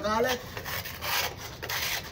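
A metal putty knife scraping over a cement-plastered wall, a rough rasping rub in uneven strokes. It is working over cracks filled with white filler, preparing the wall for paint.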